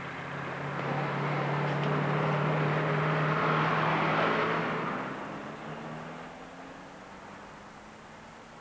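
Car engine and tyres as the car pulls away and drives off, growing louder for the first few seconds and then fading out, the engine note rising slightly as it goes.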